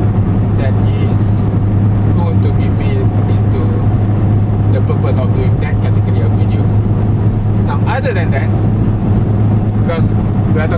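Steady low drone of a car's engine and road noise heard inside the cabin while driving.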